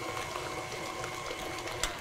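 KitchenAid stand mixer running steadily, its paddle beater mixing sweet potato mash, with an even motor hum.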